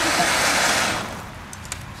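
Ground fountain firework hissing as it sprays sparks, then dying out about a second in.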